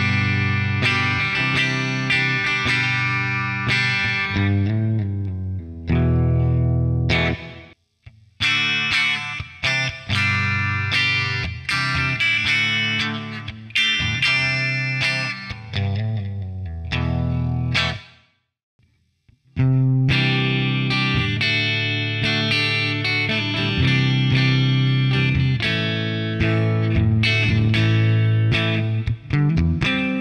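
Solo electric guitar with mahogany body, flamed maple top and Seymour Duncan Distortion humbucker pickups, played in picked riffs and chords. The playing stops twice, briefly about 8 seconds in and for a second or two around 18 seconds in.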